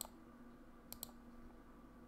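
Light clicks at a computer over near silence: one at the start, then two quick ones about a second in.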